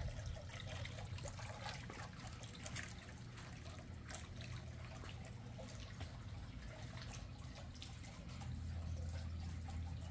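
Garden water feature trickling and splashing steadily, faint, with a low steady hum underneath.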